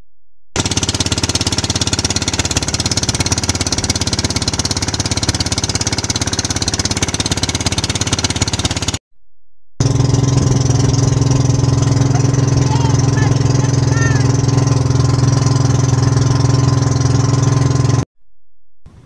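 Boat engines running steadily under way, loud with a rapid pulsing beat. The first engine stops abruptly just before nine seconds. About a second later a second engine with a deeper, steadier hum takes over.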